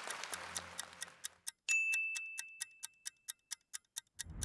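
Clock ticking steadily, about four ticks a second. About a second and a half in, a single high bell-like ding sounds and rings on for nearly two seconds.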